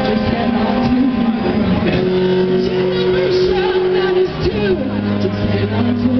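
A live rock band playing amplified guitar, with held low notes and a voice sliding in pitch over them.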